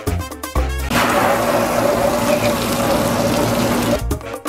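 Background music for about the first second, then a garden hose spray nozzle jetting water against a plastic garbage can and onto concrete: a loud, steady hiss and splash.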